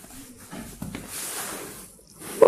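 Faint rustling and shuffling from a handheld camera being carried, with a few soft low thumps.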